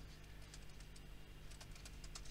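Faint keystrokes on a computer keyboard, typing at an uneven pace.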